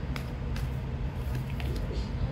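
Steady low rumble, with a few faint clicks from tarot cards being handled.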